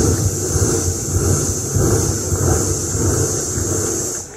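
Mimicry artist imitating the jingle of anklet bells with his voice, heard through the stage PA as a steady, loud, high hissing shimmer.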